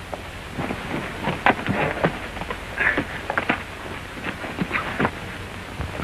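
Horses' hooves clopping irregularly on a dirt road as riders come in at a walk, over the steady hiss of an old film soundtrack.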